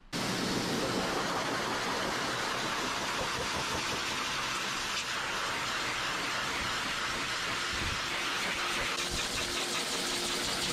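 High-velocity pet dryer running steadily, blasting air through its hose and nozzle into a Great Pyrenees' thick white coat.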